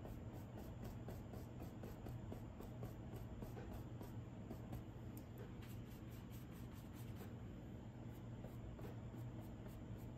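Faint, scratchy strokes of a paintbrush laying acrylic paint onto a canvas panel, over a steady low hum.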